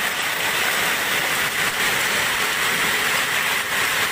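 Heavy hailstorm downpour: rain and hail falling hard on the stone street and roofs, a dense, steady hiss.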